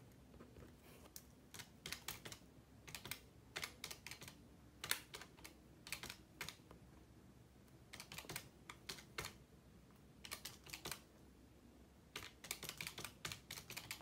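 Faint bursts of quick clicking taps from a desktop calculator's keys being pressed, in about seven short runs with pauses between, mixed with a ballpoint pen writing on paper.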